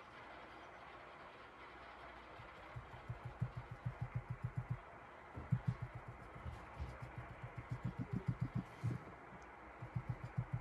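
Soft, rapid dabbing taps of a magic-eraser sponge against a stainless steel tumbler. They start about three seconds in and come in runs of about six taps a second, with short pauses between runs.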